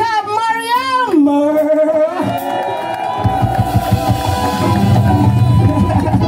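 A singer's voice drawn out with a wavering vibrato and falling in pitch, then a sustained keyboard chord from about two seconds in, and the live band's bass and drums come in about a second later.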